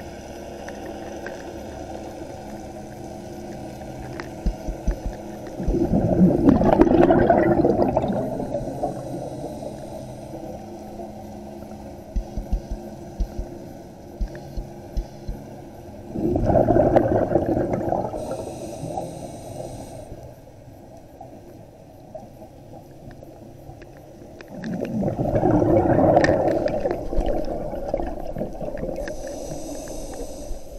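Scuba diver breathing through a regulator underwater: three bubbling exhalations about ten seconds apart, with a brief high hiss of inhalation after the later ones and a few soft ticks between breaths.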